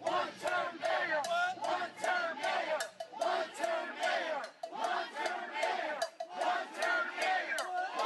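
A crowd of protesters shouting together, many voices overlapping and rising and falling in short pulses.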